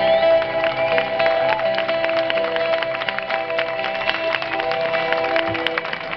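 Live band's closing chord held and slowly fading, with audience applause starting about a second in and building.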